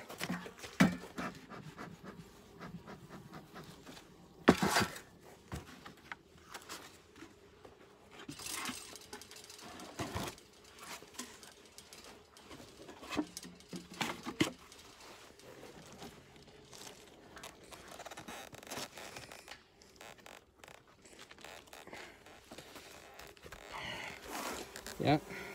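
Scattered knocks, scrapes and rustles of beehive parts and gear being handled, the sharpest knock about four and a half seconds in.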